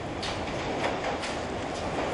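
Electric multiple unit train approaching along the platform: a steady rail rumble with repeated clicks of the wheels over rail joints, a couple each second.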